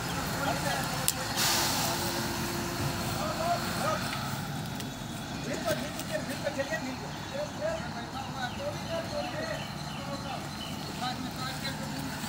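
A 140-ton railway crane's engine running steadily while it lifts a wagon, with a brief hiss about a second in.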